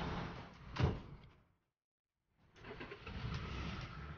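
A van's side door opened and shut with one heavy thud about a second in. After about a second of silence, steady street traffic noise resumes.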